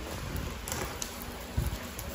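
Plastic bubble-wrap packaging rustling and crinkling as hands handle the parcel, with a couple of sharp crackles partway through and a low bump near the end.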